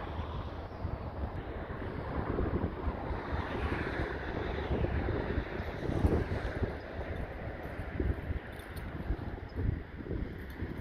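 Gusty wind buffeting the microphone: an uneven, low rushing noise that swells and dips in gusts.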